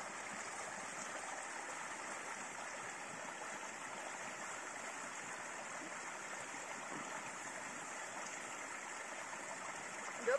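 Spring water running steadily at a wooden log trough, a quiet, even rush of flowing water.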